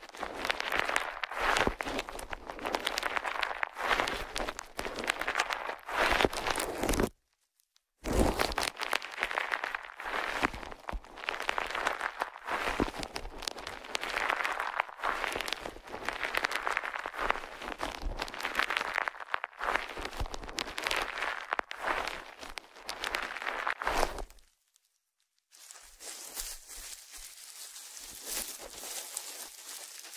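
Plastic bubble wrap crinkled, rubbed and crumpled by hand close to the microphone, making dense, irregular crackling. The crackling stops dead twice, about 7 s and 24 s in, and is softer and more even in the last few seconds.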